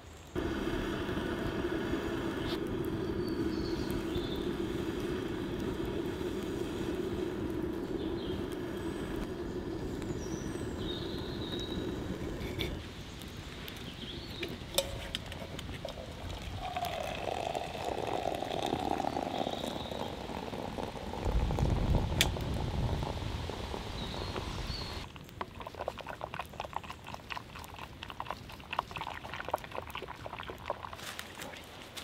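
Small metal camp kettle heating over a campfire with a steady rumbling hum, then hot water poured from the kettle into a mug, followed by a thump as the kettle is handled.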